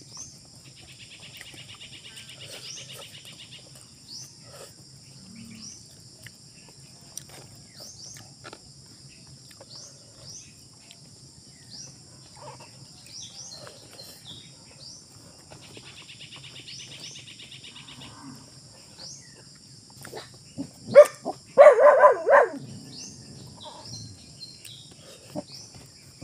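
Steady outdoor insect chorus with a short rising chirp about once a second and two brief buzzing trills, over faint clicks of chewing and fingers picking at fish. About 21 seconds in, a loud pitched call of a few quick pulses stands out above everything else.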